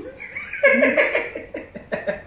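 A person laughing, a quick run of short laughs from about half a second in to a second and a half in.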